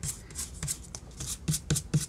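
A hand rubbing and smoothing a glue-stick-bonded paper napkin down onto a paper tag: quick repeated papery brushing strokes, about four a second.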